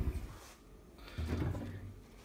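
Doors of a Haier HB14FMAA American fridge freezer being pulled open: a soft knock as a door comes away from its seal, then a low, dull sound about a second later.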